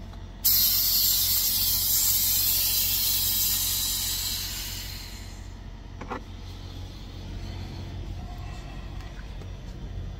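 A sudden loud hiss of escaping air starts about half a second in and fades away over about five seconds, typical of a semi truck's compressed-air system venting. A steady low hum from the truck runs underneath, with a brief knock about six seconds in.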